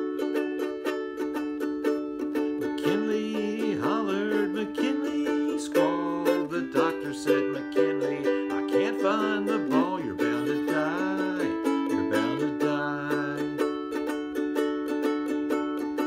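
Soprano ukulele, a Martin-style replica made by Ohana, strummed in a steady rhythm. A man's singing voice joins a few seconds in.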